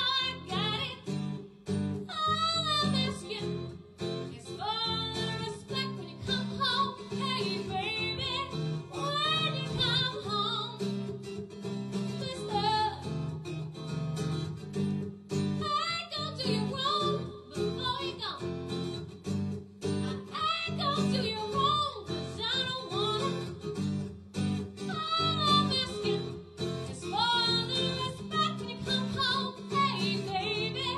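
A woman singing a soul song with wavering vibrato and runs, accompanied by an acoustic guitar.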